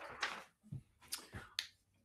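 A few faint, sharp clicks and light knocks from handling a clipboard and paper on a desk.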